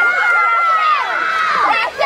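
Spectators cheering and yelling for swimmers, high voices overlapping, with one long held shout that breaks off about a second in into scattered calls.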